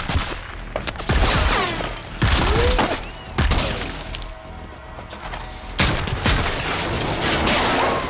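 Action-trailer sound mix: music with gunfire and heavy booming hits. About five big impacts land through it, with swooping tones between them.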